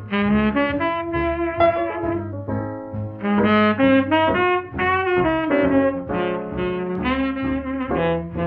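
Tenor saxophone playing a swing jazz melody line over piano, plucked string bass and drums, from an old recording whose sound stops short of the high treble.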